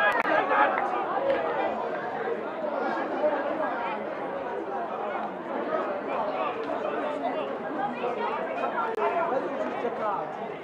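A crowd of spectators chattering: many voices talking at once at a steady level, with no single voice standing out.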